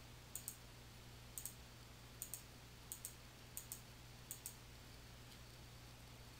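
Faint computer mouse clicks: six quick press-and-release pairs, spaced fairly evenly, as drop-down menus are opened and line styles chosen. A faint steady low hum runs underneath.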